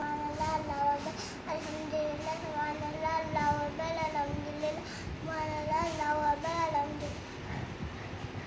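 A young child's voice singing in a sing-song chant with long, wavering held notes, breaking off briefly about five seconds in and again near the end.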